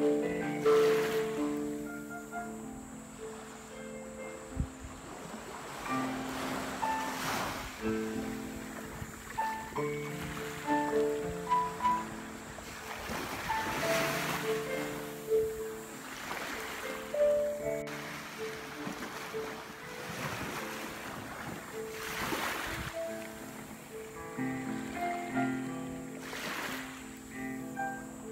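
Slow, improvised solo piano playing held notes over small waves washing onto a sandy beach, the surf swelling and fading every few seconds.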